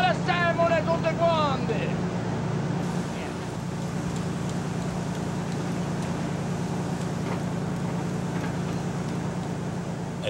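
A fishing boat's engine running with a steady low drone. A man shouts briefly at the start.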